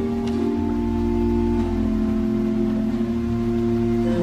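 Organ playing slow, sustained chords, the held notes changing a few times.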